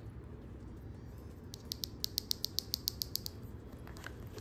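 A quick, even run of about a dozen small ratchet-like clicks, around eight a second, starting about one and a half seconds in and stopping under two seconds later. It comes from small cosmetic items being handled while a makeup pouch is packed.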